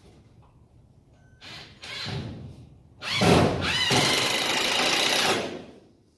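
Power drill running in short bursts, then a longer run of about two and a half seconds with a whine that rises as it spins up, driving into the wooden shelf frame.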